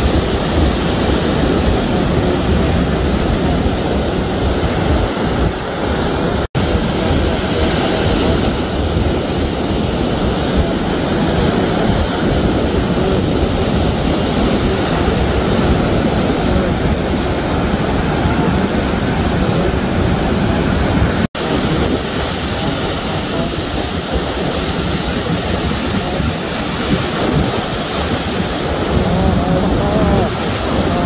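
Surf breaking on the shore and wind on the microphone, a steady rush of noise, broken by two sudden brief dropouts about six and twenty-one seconds in.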